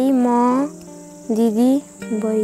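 A voice singing long, wavering held notes of a Nepali folk song, one phrase ending less than a second in and a shorter one near the end. Under it is a steady faint high insect chirring.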